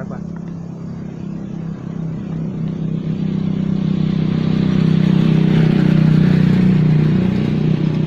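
Motorbike engine running steadily and passing along the road: it grows louder from about three seconds in, is loudest around six seconds, then eases off.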